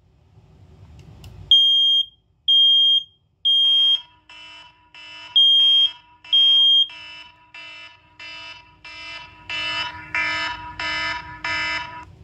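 First Alert SA303 smoke alarm sounding its test alarm: loud, piercing high beeps in the temporal-three pattern, three beeps, a pause, then two more, then it stops. From about four seconds in, the iPhone's alarm ringtone plays as a rapidly pulsing chime, about two pulses a second, growing louder near the end: the phone's Sound Recognition has recognised the smoke alarm.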